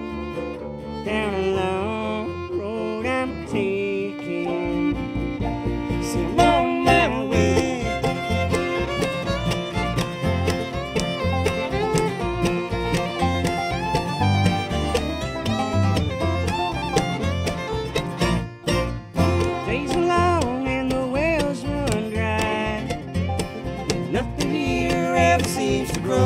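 Bluegrass string band playing an instrumental break on fiddle, mandolin, acoustic guitar and upright bass, with no singing. The bass sets a steady plucked beat from about four seconds in, and the music drops out briefly about two-thirds of the way through.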